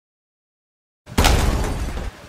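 A bomb-blast sound effect starting suddenly about a second in: a loud low boom with shattering, breaking glass, fading over about a second.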